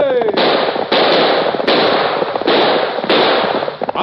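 Five gunshots fired in quick succession, each a sharp crack with a short noisy tail, from an old 1940s radio-drama recording with a dull, narrow sound.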